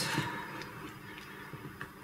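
Faint stirring of thick fruit quark with a wooden spoon in a glass bowl, with a few light clicks.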